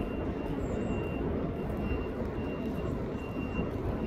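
Steady low background rumble, of the kind distant traffic makes, with a faint thin high tone that comes and goes every half second or so.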